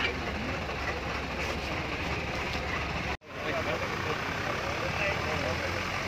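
Indistinct background voices over a steady low rumble and general outdoor noise. The sound cuts out for an instant about three seconds in.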